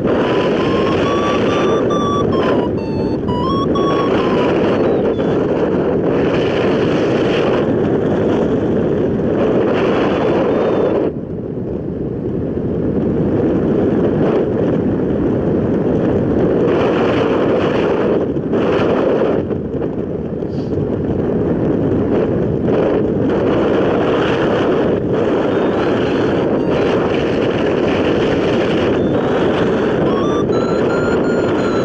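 Wind rushing over the microphone of a hang glider in flight, a steady buffeting that eases briefly about eleven seconds in and again near nineteen seconds. A thin tone that glides up and down in pitch sounds over it in the first few seconds and again at the very end.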